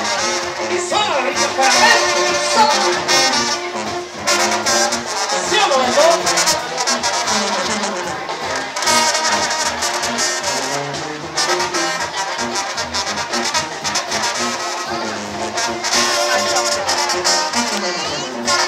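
Live brass band with a sousaphone playing a tune.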